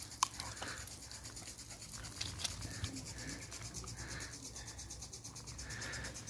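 Faint rustling of beagle puppies' paws on dry grass as they play, with a few light clicks in the first three seconds.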